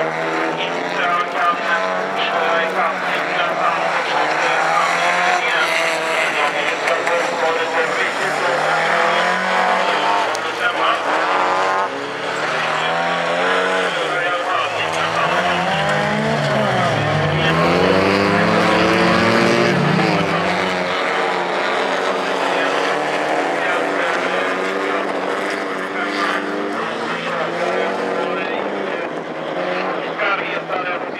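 Several folkrace cars racing on a dirt track, their engines revving up and down as they go through the bends. Midway through, one engine is nearer and louder, with lower swooping revs.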